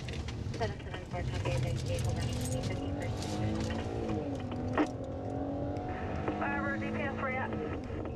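Police patrol car's engine heard from inside the cabin, accelerating under load, its pitch climbing and dropping as the car speeds up and slows. A single sharp knock comes about five seconds in.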